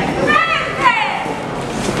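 Several people shouting over one another amid constant crowd noise, with raised, high-pitched voices strongest in the first second.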